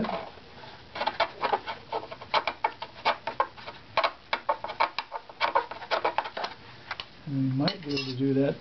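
A steel cabinet scraper worked in short, quick, uneven strokes over the inside of a violin back plate, a dry scratchy rasping several times a second. The wood is being thinned to taper one strip of the plate, evening out its tap tone.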